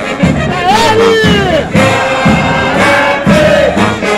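Military brass band of sousaphones, trumpets and trombones playing a march over a steady drum beat. Sliding notes come in about half a second in, followed by one long held note of about two seconds that bends down near the end.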